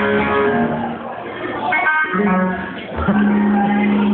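Live amplified electric guitar and bass playing held, changing notes through a venue PA, heard in a dull recording with no treble.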